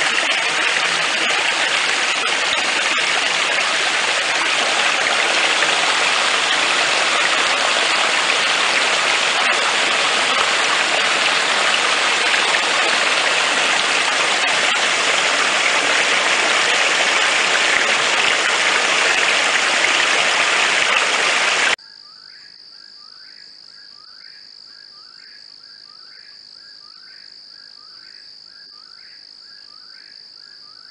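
Running water of a stream, a steady rushing, cuts off abruptly about three-quarters of the way through. Insects follow, much quieter: a steady high-pitched buzz with a short chirp repeated a little faster than once a second.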